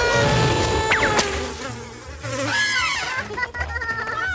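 Cartoon buzzing of a flying insect over background music with a steady low beat.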